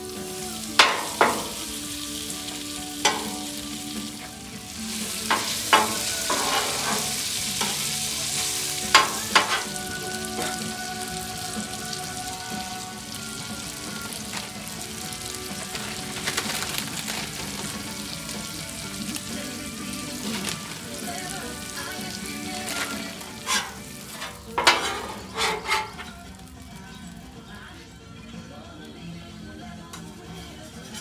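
Meat and onions sizzling steadily on a steel Blackstone flat-top griddle, with a metal spatula scraping and clanking against the griddle top in short clusters, about a second in, around nine seconds and again near the end.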